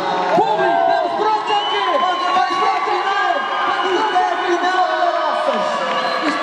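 A man speaking into a microphone over a PA system, with a crowd's overlapping voices and shouts around him.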